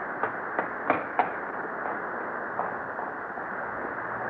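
Radio-drama footsteps running off: a few quick steps, about three a second, fading after a second or so, with one more faint step later, over a steady background hiss.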